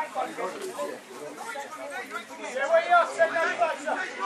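Indistinct chatter of spectators' voices close by, softer at first and louder near the end.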